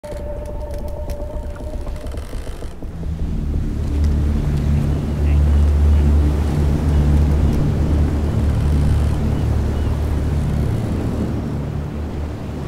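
A steady low droning rumble with several held low tones, swelling in about three seconds in and easing slightly near the end; before it, a thin steady high tone with a few clicks.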